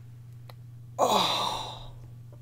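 A woman sighs about a second in: a sudden breathy exhale with a falling voice, fading out within a second. A steady low hum runs underneath.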